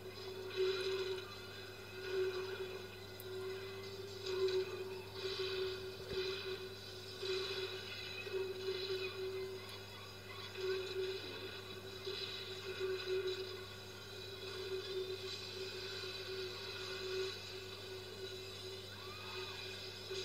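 Film soundtrack playing from a television and picked up across a room, thin and muffled: a steady mid-pitched drone that swells and fades irregularly, with faint music.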